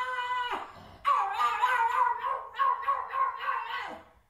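A dog howling in long, crying calls: one ends about half a second in, then a second starts about a second in and is held, wavering slightly, until near the end.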